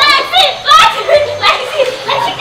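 Children's high voices calling out and shouting while playing.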